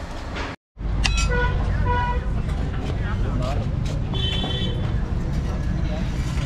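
Street traffic: a steady low vehicle rumble with two short car-horn toots, about a second and a half and two seconds in.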